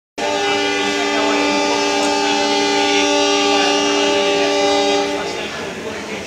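Horn of a WDM-3A diesel locomotive on the departing train, sounding one long, steady blast of several notes together. The blast cuts off about five seconds in. It is the signal for the train to pull out.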